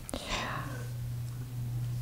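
Steady low electrical hum on the microphone sound system, with a soft click and a short breathy sound just after the start.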